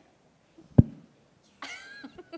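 A single sharp thump from a handheld microphone being moved about a second in. Near the end comes a short, high-pitched vocal exclamation in reaction to the remark.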